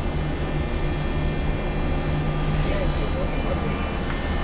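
Offshore crane's engine and hydraulic machinery running with a steady, loud low drone.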